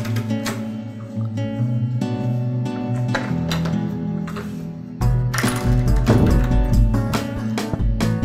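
Background music led by a strummed guitar over sustained bass notes; about five seconds in a deep, pulsing bass beat joins and the music gets louder.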